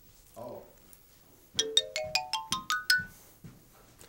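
Short comic musical sound effect: a quick rising run of about nine struck notes climbing step by step, each ringing briefly.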